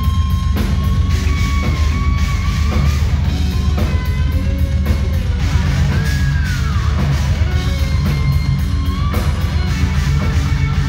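A live hard-rock band playing loudly: distorted electric guitars over bass and drums, with a lead guitar holding notes and bending them up and down in pitch.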